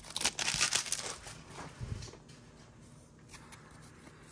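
Foil wrapper of a Yu-Gi-Oh booster pack crinkling as the cards are pulled out, loudest in about the first second. It then dies down to faint rustles of cards being handled.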